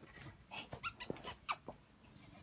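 Shiba Inu puppy giving a few short, faint whimpers that fall in pitch, among several light clicks.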